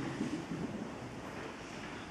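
Steady hiss of a large hall's background noise, slowly fading a little, with no distinct event in it.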